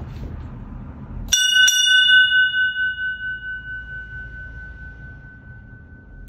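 Brass ship's bell struck twice in quick succession about a second in, then ringing on with one clear tone that slowly fades away. It is the bell being struck ('glasen') by hand with its clapper.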